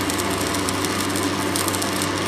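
Electric arc welding on a steel pipe being patched: a steady crackling sizzle from the arc, over a low steady hum.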